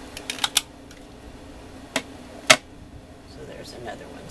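We Are Memory Keepers corner rounder punch clicking as it is worked on small cardstock pieces: a quick run of light clicks at the start, then two sharp snaps about two seconds in, the second the loudest.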